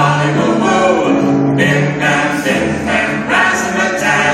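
A group of voices singing a children's action song, holding long sung notes.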